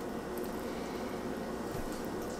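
Steady faint room hiss with no distinct events; the knife slicing through the fish's flesh makes no clear sound of its own.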